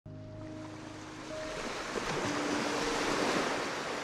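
Logo intro sound: a rush of noise like surf swells up over the first couple of seconds and eases off toward the end, over soft sustained musical notes.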